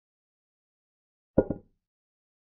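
Digital chess board's piece-capture sound effect: a short wooden clack with a weaker second click right after it, about one and a half seconds in.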